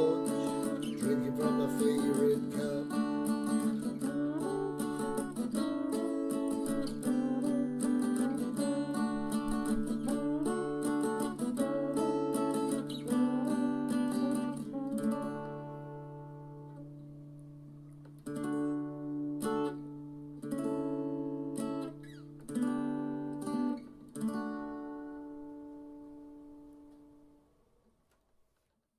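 Acoustic guitar playing an instrumental outro. It strums chords steadily for about fifteen seconds, then fades, then plays four separate strummed chords a couple of seconds apart, each left to ring, the last one dying away.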